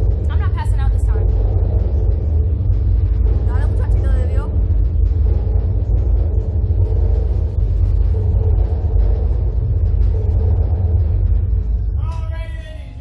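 Steady loud low rumble of the Slingshot ride's machinery running while the capsule is held before launch; it starts to fall away near the end. Two short high voice sounds come from the riders, about half a second and about four seconds in.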